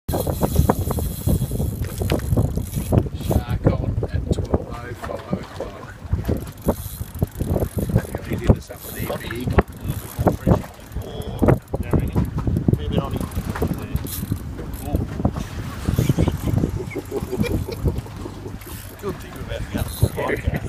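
Wind buffeting the microphone with a constant low rumble, broken by many irregular clicks and knocks from a heavy game rod and reel being worked against a big fish, with indistinct voices underneath.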